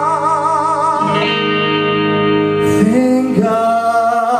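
Live solo electric guitar music from the stage: long held notes with a regular waver, moving to new notes about a second in and again near three seconds.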